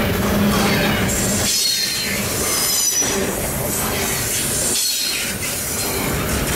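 Double-stack container well cars of a freight train rolling past close by: a loud, steady rumble of steel wheels on rail with a thin high wheel squeal over it. The noise dips briefly a few times, every one to two seconds.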